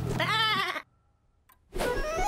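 Cartoon lamb bleating: one short, wavering call over a low music bed, both cutting off just under a second in. A bright new sound starts near the end.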